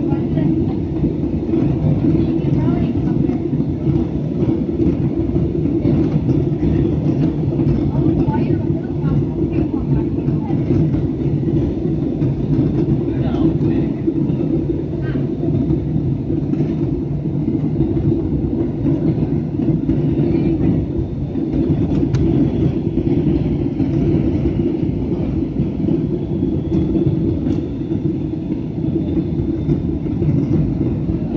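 Airliner cabin noise heard from a window seat during the descent: a steady low rumble of the jet engines and airflow, unchanging throughout.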